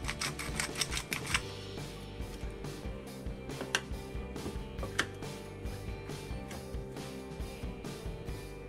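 Pepper mill grinding black pepper over a bowl, a quick run of clicks about eight a second that stops about a second and a half in, followed by a couple of single clicks, with soft background music underneath.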